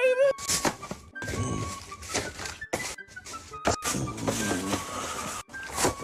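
Background music from a playing TikTok clip, with several short thumps scattered through it.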